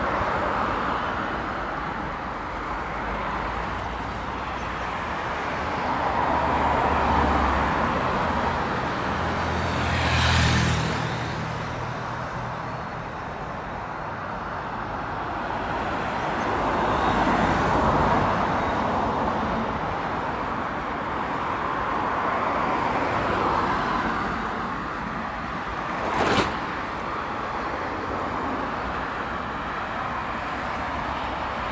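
Road traffic on a multi-lane city road: cars passing one after another, each swelling and fading, one with a heavier low engine rumble about a third of the way through. A single sharp click near the end.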